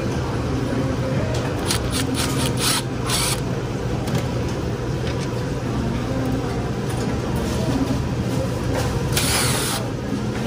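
Cordless impact driver briefly rattling as it backs out the screws of a drink cooler's end panel, a couple of short runs about two to three seconds in, over a steady low hum. A longer rasping noise comes near the end.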